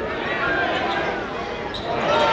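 Arena crowd noise at a basketball game: many spectators' voices overlapping, with a basketball bouncing on the hardwood court and a short sharp knock near the end.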